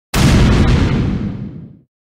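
A boom-like intro sound effect: a sudden, loud, noisy hit that fades away over about a second and a half.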